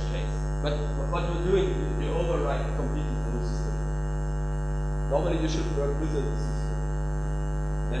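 Steady electrical mains hum with a dense buzz of overtones in the recording, with indistinct speech surfacing over it about a second in and again around five seconds.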